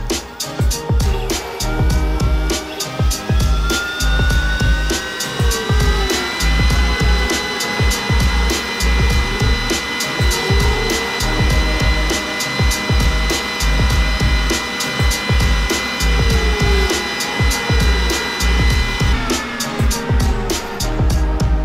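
Background music with a steady beat, over a laser engraver cutting a ring: a machine whine rises in pitch over the first few seconds, holds steady, and stops shortly before the end, with shorter gliding tones as the head moves.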